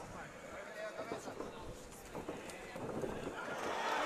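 Faint crowd noise in an arena, with distant shouting voices and light thuds, growing louder near the end.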